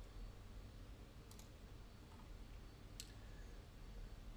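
Near silence with a few faint computer mouse clicks: a quick double click about a second and a half in, and a single click about three seconds in.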